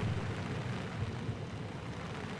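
Steady outdoor background noise in a pause between spoken phrases: a low rumble with an even, soft hiss.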